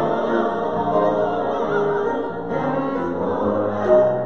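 Choir singing with instrumental accompaniment, the sung notes held and wavering.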